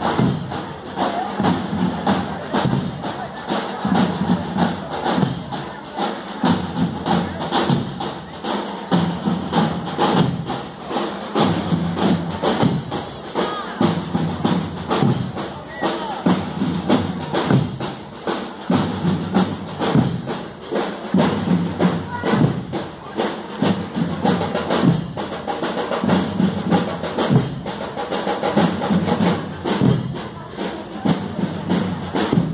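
School marching band playing a march, with steady, rapid drum strokes of snare and bass drums.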